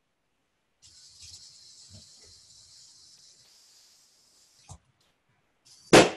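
A small robot's wheel servos whirring faintly for about four seconds, then a click as they stop. About a second later a sharp, loud bang comes at the very end as the pin on the robot's servo arm pops a balloon.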